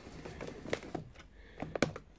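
A few light clicks and knocks from a camera tripod being moved and adjusted, one about three-quarters of a second in and two close together near the end.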